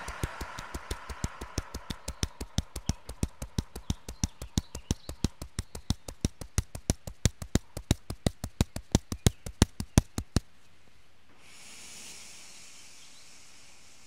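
Loose fists tapping steadily on the chest, about four taps a second for about ten seconds, growing louder toward the end, with a slow breath out through the mouth during the first few taps. After the tapping stops, a soft breath is drawn in.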